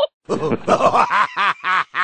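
A person laughing in a rapid run of pitched bursts, about five a second, starting after a brief pause.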